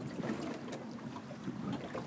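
Faint steady background of wind and water out on the open river, with no distinct event.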